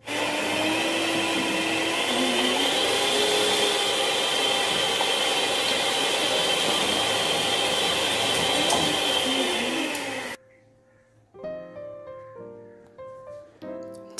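Electric hand mixer running steadily at speed, its twin beaters whisking raw egg and chopped garlic in a plastic tub to a froth before any oil is added. It cuts off suddenly about ten seconds in, and soft background music follows.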